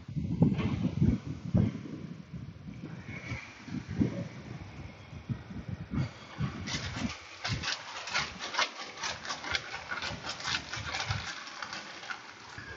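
Thin plastic bag crinkling in quick, dense crackles from about halfway through, as a foam air-filter element is squeezed inside it to work motor oil through the foam. Before that, a few low knocks and handling thuds.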